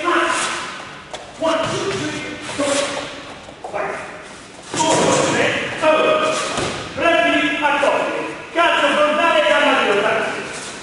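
Strikes landing on pads with repeated thuds in a large, echoing gym hall, mixed with men's voices.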